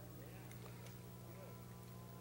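A faint steady low hum, with a few faint short sliding sounds in the first second.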